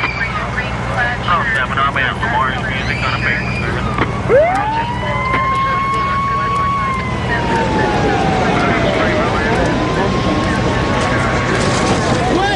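An emergency vehicle's wailing siren winds up about four seconds in, holds, slowly falls away, then winds up and holds again, over the voices of rescue workers and a steady low rumble.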